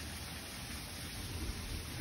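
Steady, even background hiss with no distinct events: outdoor room tone.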